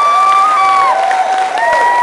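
Audience applauding and cheering, with several drawn-out cheering voices held about a second each over the clapping.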